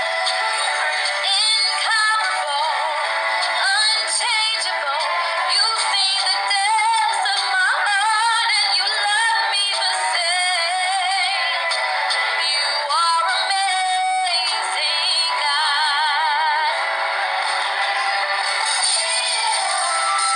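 A young woman singing solo, with runs and a wavering vibrato on held notes later on. The recording sounds thin, with no bass.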